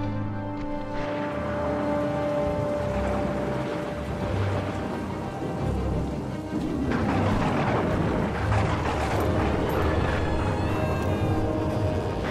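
Film score music with long held notes over the hiss of heavy rain and low thunder rumble. The rain noise swells from about seven seconds in.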